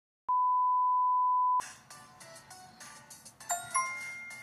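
An edited-in electronic beep: one steady high-pitched tone lasting just over a second, starting a moment after the sound cuts to dead silence and ending abruptly. Quieter background music follows.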